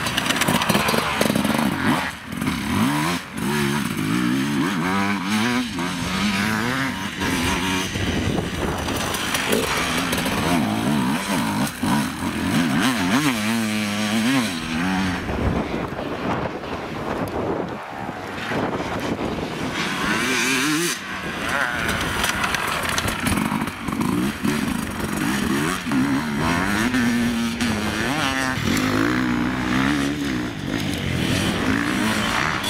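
Enduro dirt-bike engines revving up and down as several bikes pass in turn, the pitch rising and falling with throttle and gear changes.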